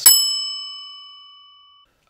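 A single bell struck once: a bright ding that rings out and fades away over nearly two seconds.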